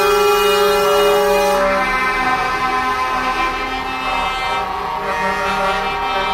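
Truck air horns sounding in long, overlapping held tones from a convoy of lorries driving past, the notes changing a couple of times.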